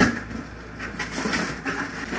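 A cardboard shipping box being opened by hand: a sharp knock of the flaps at the start, then irregular rustling and scraping of cardboard and packing as hands reach inside.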